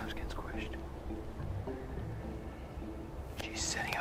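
Hushed, whispered voices of a wildlife field crew over soft background music of short, low held notes, with a brief hissing whisper near the end.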